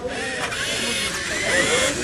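LEGO Mindstorms NXT robot motors whirring steadily as two robots push against each other, under a murmur of crowd voices.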